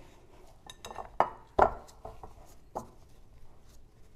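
A glass mixing bowl knocking and clinking as gloved hands press and scrape a ball of pastry dough around it to wipe its sides. A few scattered knocks, the two loudest close together about a second and a half in.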